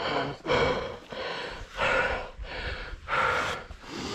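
A person breathing heavily close to the microphone, four loud, hard breaths spaced unevenly about a second apart, as after physical exertion.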